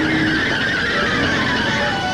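Cartoon sound effect of a taxi cab's tires screeching as it skids to a stop, one long squeal falling steadily in pitch.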